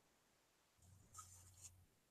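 Near silence: room tone with a faint low hum and two faint soft ticks in the second half.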